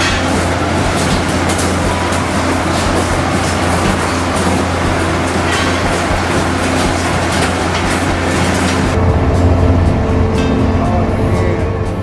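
Fish-processing machinery running steadily: a dense mechanical din over a low hum. About nine seconds in, the sound shifts to a deeper, duller hum with less hiss.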